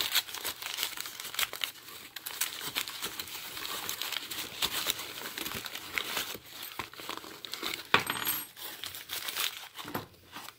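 Brown kraft-paper wrapping crinkling and rustling as a combination padlock is unwrapped by hand, with light metallic clinks of the lock against the wooden tabletop.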